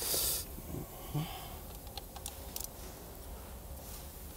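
A short breathy hiss right at the start, then a few faint clicks from a socket ratchet with an extension being worked on a fastener, around the middle.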